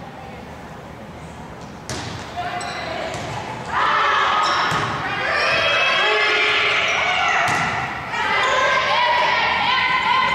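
A volleyball struck with a sharp smack about two seconds in, most likely the serve. Then, from about four seconds in, players' voices shout and call out through the rally, with further ball hits, all echoing in a gymnasium.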